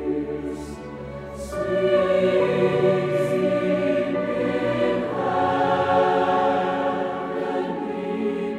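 Large mixed choir singing sustained chords with orchestra, swelling louder about a second and a half in and moving to a new chord around five seconds.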